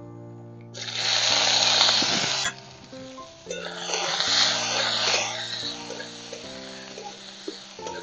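Diced coconut sizzling as it drops into hot oil in a wok, a loud hiss from about a second in that cuts off abruptly, then sizzling again as a spatula stirs the pieces. Steady background music plays throughout.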